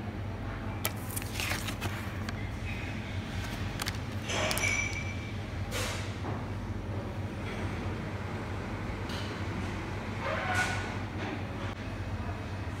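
Café room ambience: a steady low hum with a few brief clicks and knocks scattered through it.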